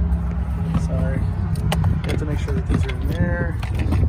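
A steady low hum runs under a few sharp handling clicks, with brief murmured speech about a second in and again near the end.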